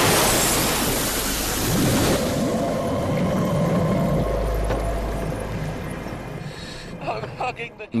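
A diver plunging into the sea: a sudden loud splash, then a muffled underwater rush and rumble of water that slowly fades.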